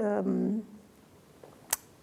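A woman's voice ends on a held, drawn-out vowel, then a pause near silence broken by one short click shortly before she speaks again.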